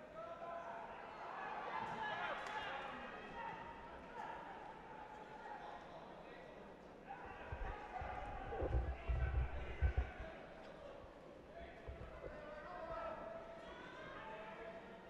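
Indistinct voices calling out in a large hall during a judo bout, with a cluster of dull, heavy thumps on the tatami mat in the middle as the judoka grapple and one goes down to the mat.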